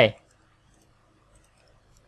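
A few faint, scattered clicks from a computer keyboard and mouse as a web address is copied and pasted into a new browser tab; otherwise the room is nearly silent.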